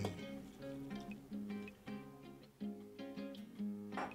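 Quiet background music of plucked acoustic guitar notes, played one after another.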